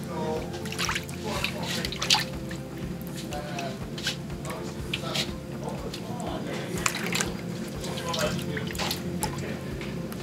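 A hand swishing and splashing water in a stainless steel mixing bowl, stirring dry yeast into the water, with irregular small splashes throughout.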